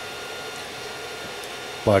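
Creality 3D printer running a print: a steady mechanical hum with a faint steady whine.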